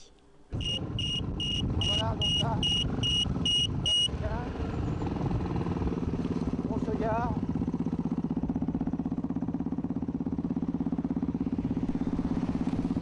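A high electronic beeper sounds eight short beeps over about three and a half seconds. Then a rally vehicle's engine runs steadily under way.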